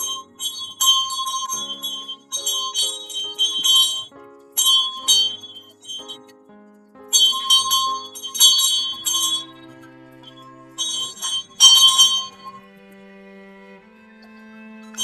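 A metal bell tied to a wooden ceremonial staff is shaken in about five bursts of rapid clanging, with pauses between the bursts. Underneath runs film-score music with long held low notes.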